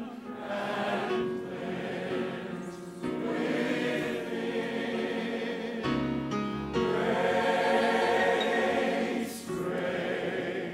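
A large gospel choir of mixed voices singing a slow hymn in harmony, in long held phrases that break for a breath about every three seconds.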